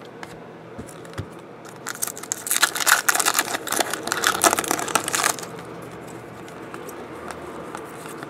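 A foil trading-card pack wrapper being torn open and crinkled by hand: a dense run of crackling that starts about two seconds in and lasts about three seconds, with quieter handling noise around it.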